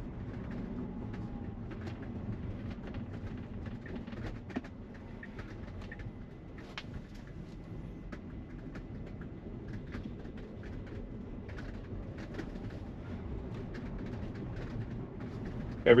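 Steady low road and tyre noise heard inside the cabin of a Tesla Model Y, an electric car with no engine sound, driving at low speed, with faint clicks scattered throughout.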